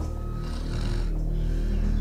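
A woman snoring in her sleep, one long breath through the middle, over a low, steady music underscore.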